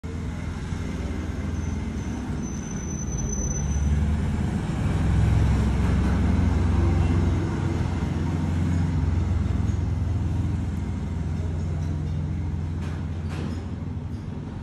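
Steady low background rumble that swells for a few seconds in the middle, with a thin high tone from about two to four seconds in.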